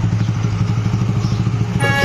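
Small commuter motorcycle engine idling steadily at standstill. Music comes in just before the end.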